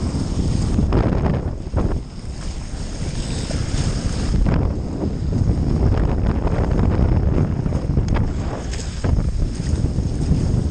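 Wind buffeting the microphone over the rush of water along a Hobie 20 catamaran's hulls under sail, a steady low rumble with a few brief louder surges.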